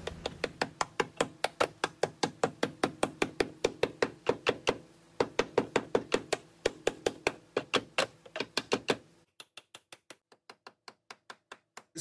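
Steady hammer blows, about four a second, on the slit sheet-metal body seam of a Lexus GX470's wheel well, bending the cut tabs flat to clear larger tires. There is a brief pause a little before halfway, and the blows turn much fainter for the last few seconds.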